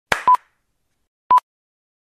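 Short electronic beeps from an intro sound effect, one about every second, each a brief clipped tone. A short burst of noise comes just before the first beep.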